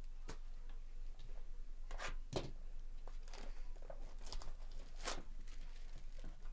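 Plastic shrink wrap crinkling and tearing as it is stripped off a sealed trading-card hobby box, in a series of short, separate crackles.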